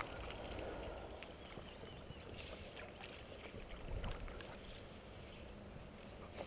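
Faint water sloshing and lapping around a wading angler's legs, with a few small clicks and knocks from a landing net and fly rod being handled and a low rumble of wind on the microphone.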